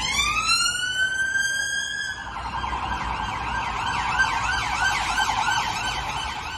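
Police vehicle siren: a slow wail climbing in pitch for about two seconds, then switching to a fast yelp that keeps repeating.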